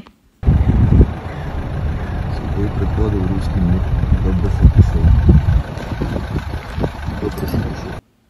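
Low, steady rumble of a car driving, heard from inside the cabin, with faint, indistinct voices talking. It cuts in about half a second in.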